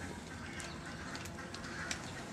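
Short bird calls over a steady low rumble.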